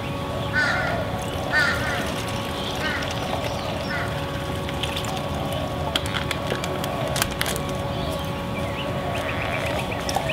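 Outdoor birds calling: short, repeated calls about once a second through the first four seconds, over continuous lower warbling chatter and a steady background hum.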